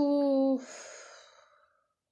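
A woman's voice holding a steady, drawn-out hesitation sound for about half a second as she trails off mid-sentence, then a breathy sigh that fades away over about a second.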